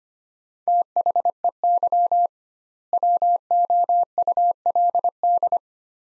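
Morse code sent as a keyed tone at one steady pitch at 25 words per minute, spelling out two words, "they would", with a stretched word gap of about half a second between them.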